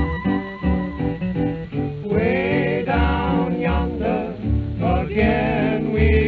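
Early-1930s country string-band recording: strummed guitars and a plucked string bass keep a steady beat with a fiddle on the tune. About two seconds in, a fuller melody with a wavering pitch comes in over them.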